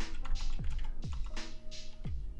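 Computer keyboard typing, a run of quick keystrokes, over quiet background music with a steady beat.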